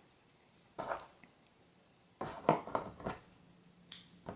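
Soft rustling and rubbing of yarn being handled by fingers, in short scratchy spells, then one sharp snip of small scissors cutting the yarn just before the end.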